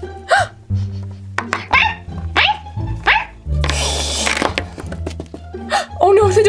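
Background music with a steady bass line, over four short high dog yips that drop in pitch, and a brief hissing burst about four seconds in.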